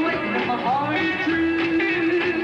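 Live rockabilly band playing, with electric guitar and upright bass.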